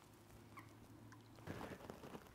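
Near silence: faint background sound with a brief soft rustle about one and a half seconds in.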